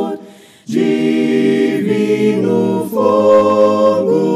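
A group of voices singing a Portuguese hymn a cappella in harmony, with a short break between phrases about half a second in before the next line starts.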